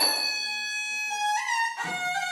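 Pi nai, the Thai quadruple-reed oboe, playing a solo melody with a bright, reedy tone that slides and steps between notes. Taphon drum strokes come at the start and again near the end.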